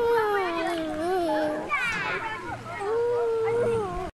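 A child's voice holding two long drawn-out, wavering calls: the first slides slowly down in pitch, and after a short high squeal the second is held fairly steady near the end.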